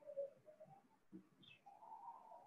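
Faint bird calls over near-silent room tone, with a short high chirp about one and a half seconds in.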